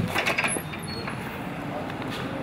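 A sharp click and a brief clatter as a shop's front door is pushed open, then a steady hum of street traffic.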